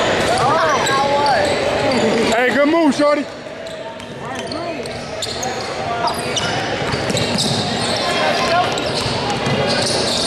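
Basketball game in an echoing gym: spectators' chatter and shouts over the ball bouncing on the court. The loudest shouting comes just before three seconds in and cuts off sharply, and the hubbub then builds back up.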